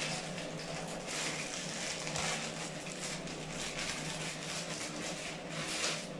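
Plastic packaging crinkling and rustling in irregular bursts as a skincare bottle is unwrapped by hand, over a steady low hum.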